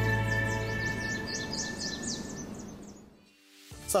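The tail of a TV morning-show title jingle: a held music chord fading out, with a run of quick, high, birdsong-like chirps over it, about four a second. It dies away to near silence a little after three seconds in, and a faint low hum comes in just before the end.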